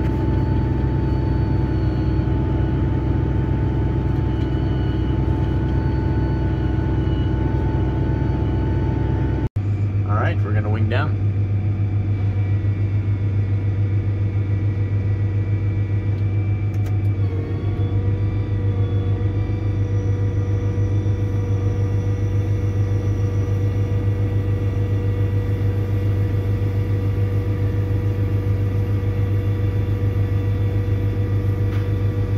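Tracked tractor (Fendt 1167 Vario MT) running steadily under way while towing an air drill: a loud, steady drone with an engine hum. An abrupt break about nine and a half seconds in turns it into a deeper steady hum, with a brief wavering tone just after.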